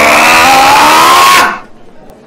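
A very loud, harshly distorted, drawn-out vocal cry, held on one pitch that rises slightly and then sags, stopping about a second and a half in.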